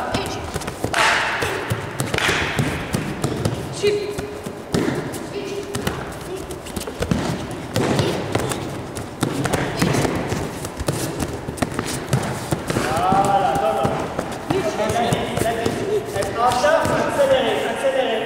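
Quick barefoot steps, stamps and thuds on tatami mats from karate footwork drills, with voices calling out in the hall, loudest near the end.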